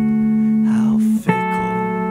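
Violin holding long bowed notes, moving to a new note a little past a second in, over the song's backing music.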